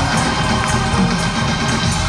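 Live gospel music from a church choir and its band, loud and continuous with a heavy bass line.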